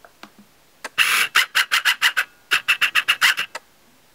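Camera being handled to refocus it: a brief rustle, then two quick runs of sharp clicks, about six or seven a second.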